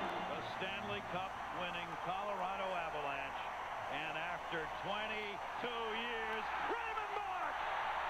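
Television hockey play-by-play commentator talking over a cheering arena crowd during a Stanley Cup celebration, heard at a low level as playback from the clip being watched.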